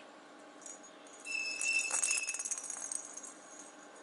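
A small bell inside a perforated plastic cat toy ball jingling as the ball is knocked and rolls, starting about a second in and dying away after about two seconds.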